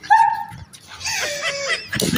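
A dog-like whine, held briefly near the start, followed by rougher yelping sounds.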